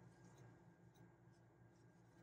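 Near silence: a faint steady low hum with faint soft ticks and rustles of a metal crochet hook working yarn, a few per second.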